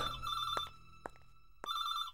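Telephone ringing with an electronic trilling ring: one ring stops under a second in, and after a short pause the next ring starts near the end.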